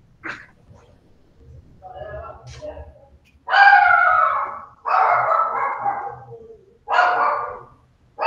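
A dog barking in three loud bouts, starting about halfway through, heard through a video-call microphone.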